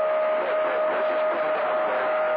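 CB radio receiving skip on channel 28: steady static hiss with a steady whistle tone running through it, and faint wavering voices buried under the noise.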